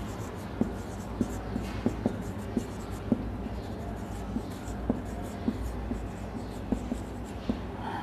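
Marker pen writing on a whiteboard: light, irregular taps and strokes as the words are written, over a steady low hum.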